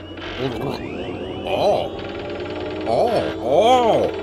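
A run of swooping novelty sound effects: tones that each rise and fall in pitch, growing louder toward the end, over a steady hum and a mechanical whirring.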